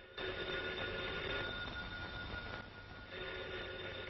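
Telephone bell ringing in two bursts about three seconds apart.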